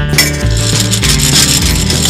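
Cartoon sound effect of a coin dropping into a gumball machine: a clinking burst a fifth of a second in that runs on as a dense rattle for over a second while a gumball is dispensed, over background music.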